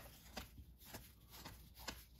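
Faint flicks of cardboard trading cards being thumbed from one hand to the other, a few soft clicks spaced unevenly.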